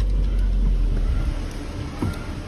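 Low, steady rumble of a car heard from inside its cabin, engine and road noise, easing off near the end.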